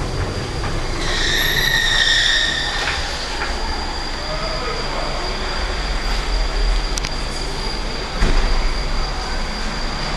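Lift doors sliding open with a high-pitched squeal about a second in, then a steady hum, and a thump about eight seconds in as the doors shut.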